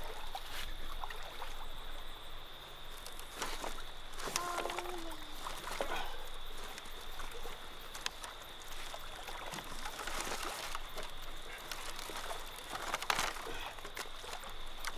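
Dry branches and dead leaves of a fallen treetop rustling, crackling and snapping as they are pushed and pulled apart by hand, in irregular bursts, over a faint steady high tone.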